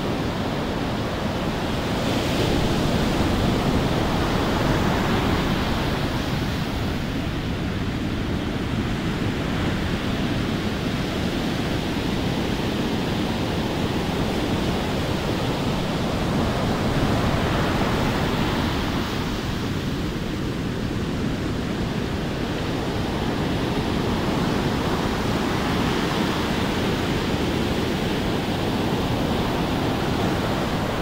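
Heavy surf breaking on a sandy beach: a steady rushing roar of waves that swells louder and eases off as each set rolls in.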